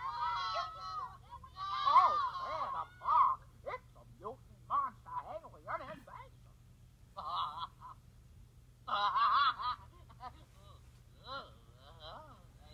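High-pitched, wordless cartoon character voices in a dozen or so short bursts, with laughter.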